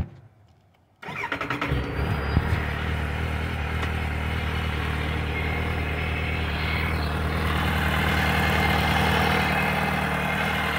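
2005 Kawasaki Z750S inline-four engine started from cold. A sharp click, then about a second in the electric starter cranks briefly, the engine catches and settles into a steady idle.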